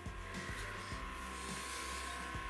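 A large metal-caged USB desk fan running, with a steady high whine from its motor and a rush of air, under background music.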